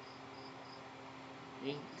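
Faint, high-pitched insect chirping in short pulses about four times a second, over a steady low electrical hum.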